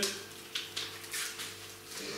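Quiet scuffs and rustles of hands turning over a cardboard firework cake box, with a faint steady hum underneath.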